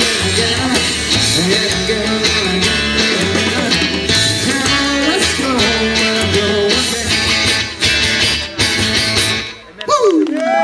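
Rockabilly band playing live, with electric guitar, acoustic guitar, upright double bass and drums, and the full band steady through most of the stretch. Near the end the music stops abruptly as the song finishes.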